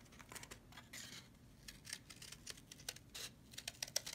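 Scissors cutting through thin cardboard: a string of faint, irregular short snips and crunches as the blades work around a circle.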